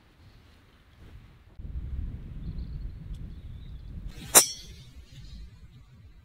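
A driver's metal head striking a golf ball off the tee: one sharp, loud crack about four seconds in, with a brief ringing after it.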